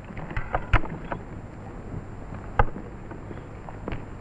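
A few scattered sharp knocks and taps over a steady hiss on an old film soundtrack, the loudest a quarter of the way in and again past the middle.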